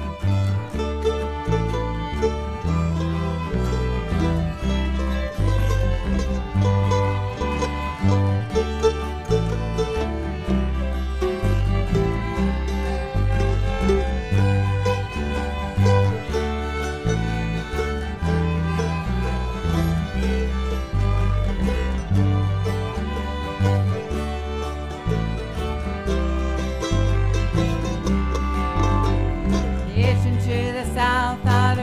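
Acoustic bluegrass-style string band playing an instrumental break in G: fiddles carry the tune over strummed acoustic guitars, mandolin chop and a plucked bass line that changes note on the beat.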